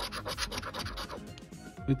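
A handheld scratcher tool scraping the coating off a scratch-off lottery ticket in quick back-and-forth strokes, about seven or eight a second. The scraping stops a little over a second in.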